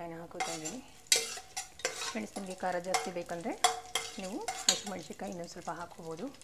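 Metal spoon stirring and scraping around the bottom of an aluminium pressure cooker: repeated scrapes, many with a pitched, wavering squeal, and light clinks. Spices and green chillies fry in the oil underneath with a light sizzle.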